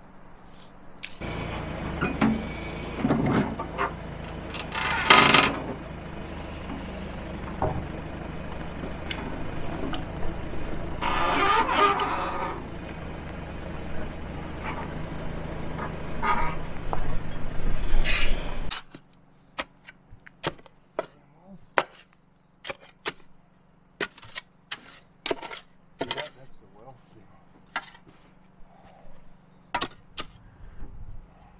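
A backhoe running and digging with its bucket, steady engine sound with loud scraping of soil and rock in surges; it stops abruptly about two-thirds of the way through. After that, a hand shovel chopping into the dirt with sharp strikes.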